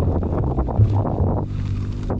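Wind buffeting the microphone of a camera on a moving mountain bike, a deep, uneven rumble, with the tyres crackling over loose gravel. About one and a half seconds in, the rumble eases and steady tones come in.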